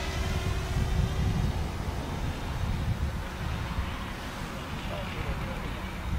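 GoPro Karma quadcopter's propeller hum, growing fainter as the drone flies off into the distance, under an uneven low rumble of wind on the microphone.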